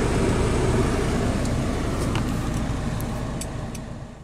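Land Rover Defender 110 running, heard from inside the cab as a steady low engine and road rumble with a few faint clicks, fading out towards the end.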